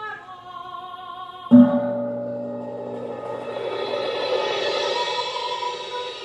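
Live choir and instrumental ensemble. Sung lines are joined about a second and a half in by a loud low struck note, the loudest moment, which rings on under a sustained chord that swells.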